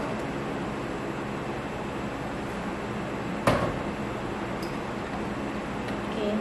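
A pump-top syrup bottle pressed to dispense syrup into a glass, giving a sharp click a little past halfway and a fainter tick about a second later, over a steady background hiss.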